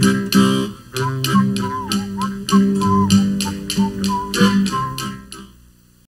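Acoustic guitar strummed in an even rhythm of about three to four strokes a second, ending the song, then fading out in the last second.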